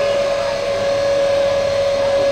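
Glass-bottom tour boat's motor running, heard from inside the cabin as a steady hum with a whine held on one unchanging note.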